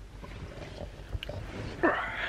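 A man's loud, wordless groan rising in pitch near the end. Before it come a few small knocks and rustles.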